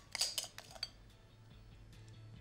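A metal spoon clinking against a glass bowl several times in quick succession, then stopping about a second in, as thick hollandaise sauce is scooped out.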